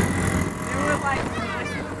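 Auto-rickshaw engine running with a steady low drone while driving in traffic, heard from inside the open cab, with voices talking over it in the middle.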